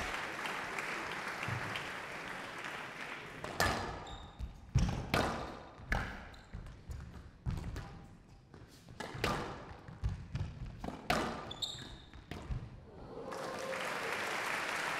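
A squash rally: the ball cracking off rackets and the front wall of a glass show court, sharp knocks about every second starting a few seconds in. Crowd applause swells near the end as the rally finishes.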